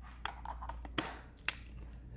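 A few sharp clicks, the two loudest about half a second apart near the middle, over a steady low hum in a small quiet room.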